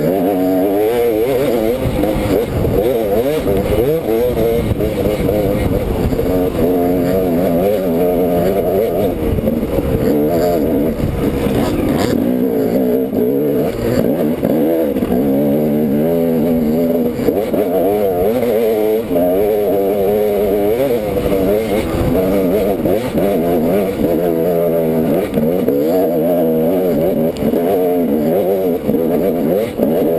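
Dirt bike engine running hard under load, its pitch rising and falling again and again with the throttle, heard from a helmet-mounted camera, with a low rumble of buffeting underneath.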